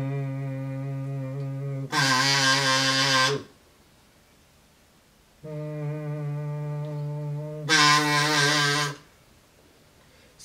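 A kazoo hummed into twice, on one steady low note. Each time the plain hum turns into the kazoo's loud, bright buzz for about a second and a half, as the wax-paper membrane inside starts to vibrate.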